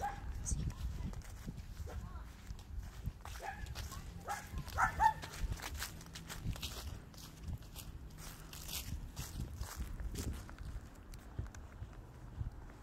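Footsteps while walking, with low rumble from the phone being carried; a few short pitched calls come through about four to five seconds in.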